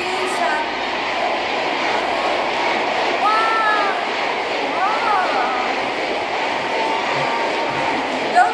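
Arena crowd cheering and screaming steadily, with a couple of high shrieks rising and falling about three and five seconds in.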